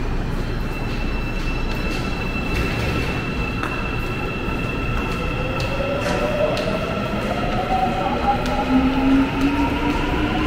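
Daegu Metro Line 2 subway train in the underground station: a steady rumble carrying held tones, with a motor whine that rises in pitch from about halfway through as the train picks up speed.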